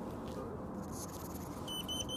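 African pygmy hedgehog giving two short, high-pitched chirps near the end: its mating chirps, a courtship call to the other hedgehog.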